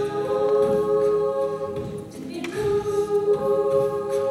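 Mixed a cappella choir singing an arrangement of a worship song, voices only, holding chords that shift to new notes about midway.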